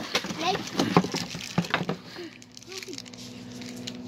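Cardboard rifle box and its packing being handled: several sharp knocks and rustles in the first two seconds, then quieter, with a faint steady hum underneath.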